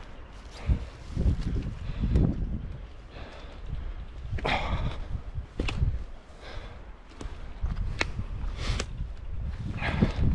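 Footsteps tramping over felled branches and brash, with irregular crunches and one sharp twig crack near the end, and wind rumbling on the microphone throughout.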